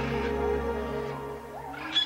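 Ambient meditation music with a steady sustained drone, overlaid with faint animal calls that rise and fall in pitch. A short, sharp sound comes just before the end.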